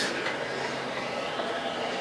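Steady hiss of air blowing up a clear tube in a pneumatic lift exhibit, holding a disc aloft.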